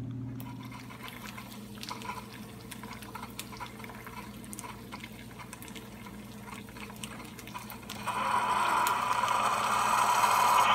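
Keurig single-serve coffee maker brewing: coffee trickles and drips into a mug. About eight seconds in, it gives way to a louder, steady stream pouring in.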